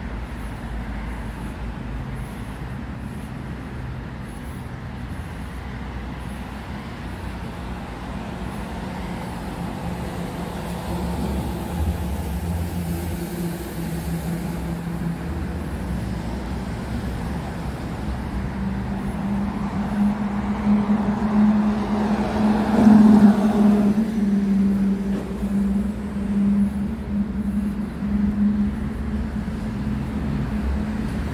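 Road traffic rumbling steadily, with a nearby vehicle engine growing louder in the second half, loudest a little past the middle, then easing off.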